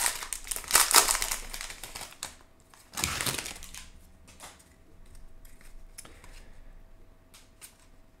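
Foil wrapper of a Topps baseball card pack crinkling as it is torn open, densest in the first two seconds, with another short crinkle about three seconds in. After that there are only faint ticks as the cards are handled.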